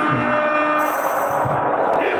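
A live rock band's last chord ringing out through the PA at the end of a song, the held notes fading after about a second.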